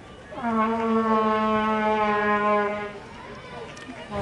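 A horn blown once: a single long, steady note that slides up briefly at the start and holds for about two and a half seconds before stopping.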